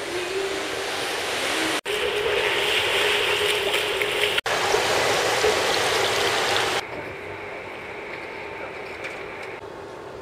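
Steady rushing of water and wind on a cruise ship's open deck at sea, with a faint steady hum. The sound is broken by abrupt cuts about two, four and a half and seven seconds in, and after the last cut it is duller and quieter.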